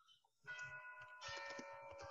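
A faint chime of several ringing tones sounding together, starting about halfway through, its notes changing twice as it goes.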